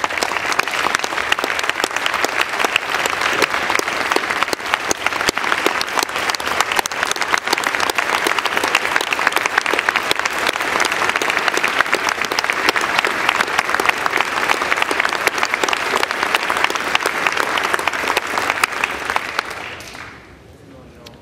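A large crowd applauding steadily, then dying away at the very end.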